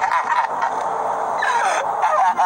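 A man laughing over the steady cabin noise of a moving pickup truck, his voice falling in pitch about halfway through.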